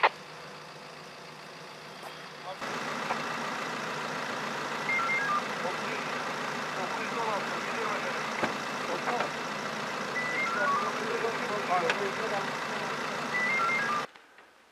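A steady hum and hiss that comes in abruptly a few seconds in, with faint voices, and three times a short falling run of electronic beeps.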